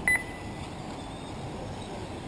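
A short electronic double beep near the start, the kind an RC race's lap-timing system gives as a car crosses the timing loop, over a steady background hiss.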